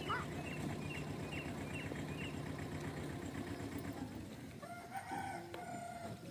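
A rooster crowing once near the end, a call of about a second and a half. Earlier, a small bird gives a quick run of short, high chirps.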